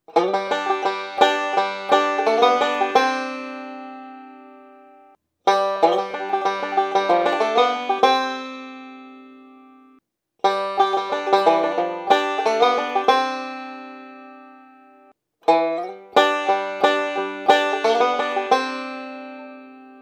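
Five-string resonator banjo picked with fingerpicks, playing four short bluegrass rolling-backup licks in turn, each moving from a G chord to a C chord. Each lick is a quick run of notes lasting about three seconds, then left ringing to fade before the next one starts.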